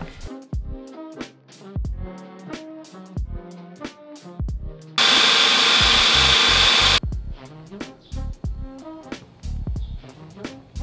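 Background music with a steady beat. About halfway through, a countertop blender runs loudly for about two seconds, chopping raw cauliflower florets into rice, then cuts off suddenly.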